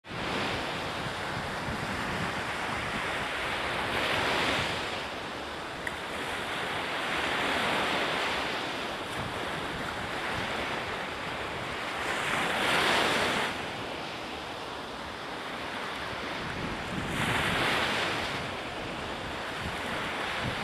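Small Atlantic waves breaking and washing up a sandy beach, a steady roar of surf that swells about four times as sets come in, with wind rumbling on the microphone.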